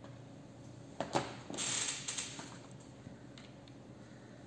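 Two sharp clicks about a second in, then a brief rustle and a few light ticks: small craft items handled on a tabletop.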